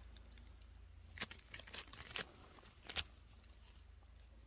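Faint handling noise of stones in the hand: a few scattered clicks and scrapes.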